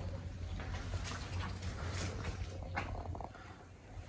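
A short animal call about three seconds in.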